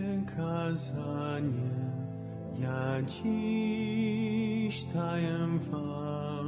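A slow church hymn in Polish, sung with long held, wavering notes over steady organ chords, the melody moving to a new note every second or so.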